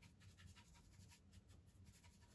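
Faint, quick scratchy strokes of a paintbrush working acrylic paint onto a stretched canvas, one stroke after another.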